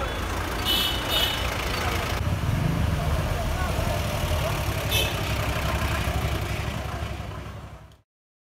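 Street traffic noise: a vehicle engine running low and steady close by, with background voices and a few short high-pitched sounds about a second in and again around five seconds. It fades out near the end.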